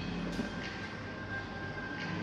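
Coffee-shop ambience: a steady low rumble with a thin high tone held through most of it, and one sharp click about half a second in.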